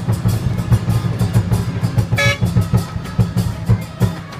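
Lion-dance percussion: drums and cymbals playing a fast, steady beat. A short horn toot sounds about two seconds in.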